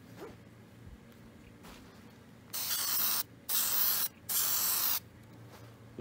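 Aerosol can of spray adhesive sprayed in three short bursts of hiss, each under a second, starting about two and a half seconds in.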